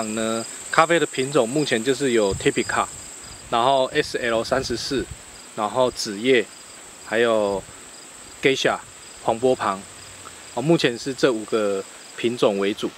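A man talking, with a steady high-pitched insect drone behind his voice.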